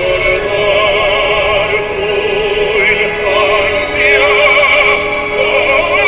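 Music: a sung melody of long held notes with a wide, even vibrato.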